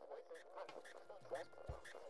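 Quiet background music with a voice in it.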